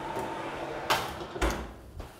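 Range cooker's oven door being shut: a light knock about a second in, then a heavier thud half a second later.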